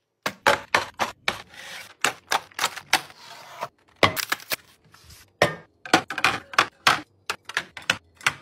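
Irregular run of sharp clicks and knocks, several a second with short pauses, as packaged drinks are handled and set down: a cardboard four-pack box and aluminium cans tapped against a stone countertop and a clear plastic organizer bin.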